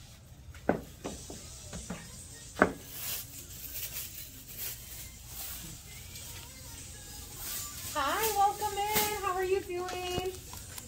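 A handful of sharp clicks and knocks in the first few seconds, from cardboard and plastic cosmetics packages being handled as purchases are rung up at a shop counter. Near the end a singing voice slides up into one held note.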